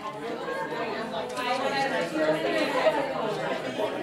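Several groups of people talking at once: indistinct, overlapping chatter.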